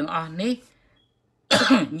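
A man speaking; after a short pause, a harsh cough breaks in about one and a half seconds in, and his speech resumes straight after it.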